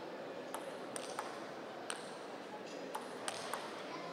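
Table tennis rally: the ball clicking sharply off bats and table, about seven hits at an uneven pace, over steady background noise.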